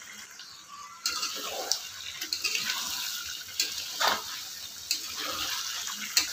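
Potato wedges and a wet tomato-spice masala sizzling and bubbling in a wok. The sound starts about a second in, with a few sharp knocks and scrapes of the spatula.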